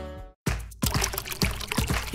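Music fades out and cuts to a brief silence. Under a second in, a cartoon water sound effect starts: choppy splashing and pouring, as of hands slapping fountain water, with music.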